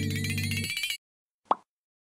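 Electronic intro music, a tone gliding upward over a held chord, that ends about halfway through. A single short plop-like sound effect follows after a moment of silence.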